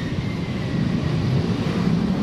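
Low, steady rumble of road traffic passing on the street.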